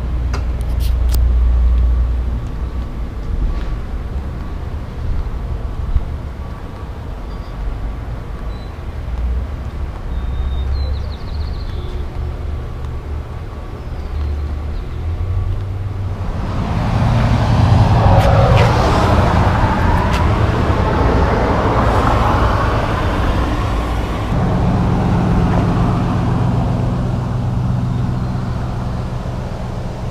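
Outdoor road-traffic noise: a steady low rumble that grows louder and fuller about halfway through and stays that way to the end.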